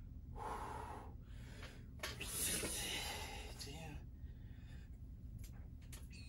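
A man breathing hard from exertion between bench-press reps: a short breath about half a second in, then a longer, louder breath lasting about two seconds.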